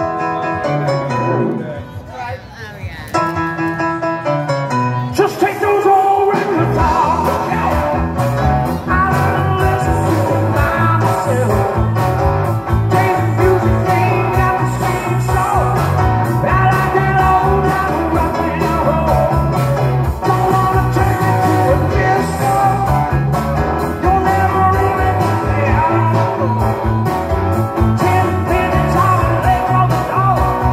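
Live rock band playing with keyboards, drums, electric guitar and singing. After a held chord and a few quieter seconds, the full band comes in about five seconds in, with a steady drum beat under lead and backing vocals.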